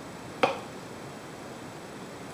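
A small kitchen knife cutting through a cauliflower floret and striking the wooden butcher-block cutting board: one sharp knock about half a second in.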